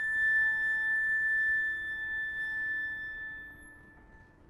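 Flute, cello and piano trio holding a sustained chord, a high flute note on top and a low cello note beneath, dying away over the last second or so.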